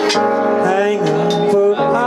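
Live music: a man singing long held notes while playing chords on an electric keyboard.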